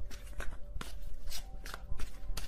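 Tarot cards being shuffled and handled: a scattered series of short snaps and rustles, over a faint steady tone.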